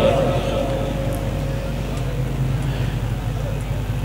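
Public address system's steady low hum and hiss, with a faint echo tail dying away over the first two seconds.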